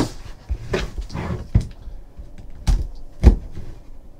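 Knocks and thumps as a small cardboard trading-card box and a plastic box cutter are handled on a tabletop, about five in four seconds, with a brief rustle about a second in.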